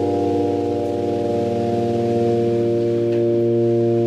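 A live rock band holding one sustained final chord, electric guitar and bass ringing out steadily and unchanged without singing.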